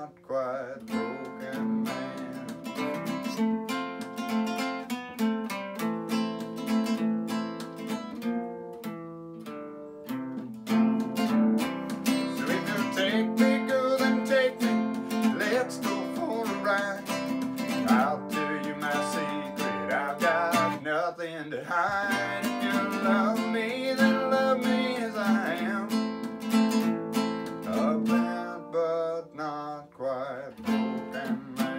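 Solo acoustic guitar strumming chords in an instrumental break between verses, softer for the first ten seconds or so and then louder.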